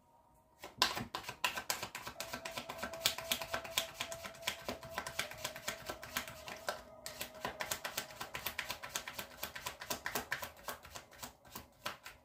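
A deck of tarot cards being shuffled by hand: a long run of quick, crisp card flicks and taps starting about a second in, with a brief pause around the middle.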